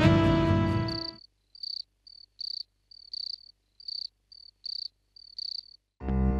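Background music stops about a second in. What follows is crickets chirping in short high pulses, about two a second, alternating louder and softer: night-time ambience.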